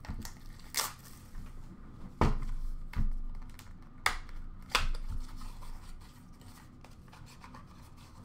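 Hands handling a cardboard card-pack box and hard plastic card holders: rubbing and scraping with about five sharp clicks in the first five seconds, then quieter handling.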